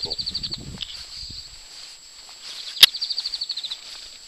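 Rapid, high-pitched chirping trills from a small animal, twice, each under a second long. A single sharp knock comes a little before three seconds in.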